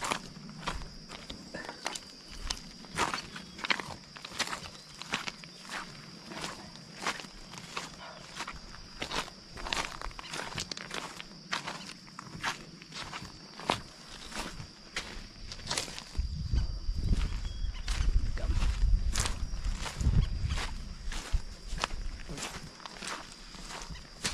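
Footsteps on sand and loose pebbles at a steady walking pace, about one and a half steps a second, over a steady thin high-pitched tone. About two-thirds of the way in, a low rumble swells for several seconds and is the loudest part.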